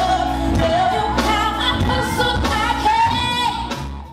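A woman singing lead into a microphone over a live band, with bass and drums keeping a steady beat. The music fades down near the end.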